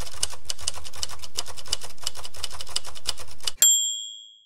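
Typewriter sound effect: a rapid, steady run of keystrokes, ending about three and a half seconds in with the ring of a carriage-return bell.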